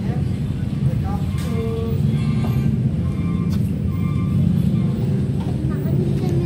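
A steady low rumble like a running vehicle engine or traffic, with faint background voices over it.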